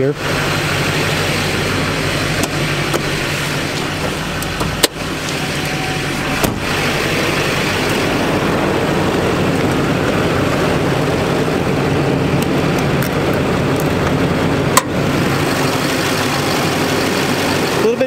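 Idling engine of a 2008 Chevrolet Silverado 2500HD, a 6.6-litre LMM Duramax V8 turbodiesel, running steadily. Two sharp clicks, about five seconds in and again near fifteen seconds.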